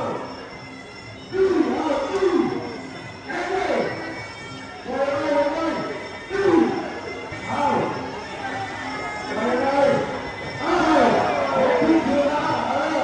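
A man's voice speaking over the arena's loudspeakers in short phrases whose pitch rises and falls, echoing in the hall, with faint music beneath.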